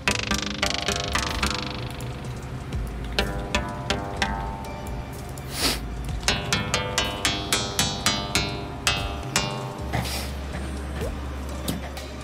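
Synthesized plucked-string notes made by Karplus-Strong synthesis: noise impulses fed through short, tuned feedback delay lines. Each note starts sharply and rings out briefly, played in an irregular run that gets several notes a second in places, over a low steady bass tone.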